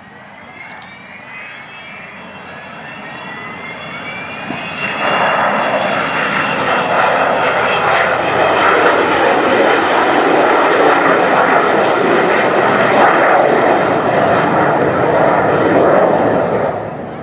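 Avro Vulcan XH558's four Rolls-Royce Olympus turbojets passing low overhead. A whistling tone rises in pitch as the sound builds over the first few seconds. About five seconds in, a loud jet roar sets in and holds, easing off only at the very end.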